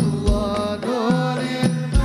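Live sholawat: men singing an Arabic devotional hymn together over hadrah frame drums, with deep bass-drum strokes at about every second.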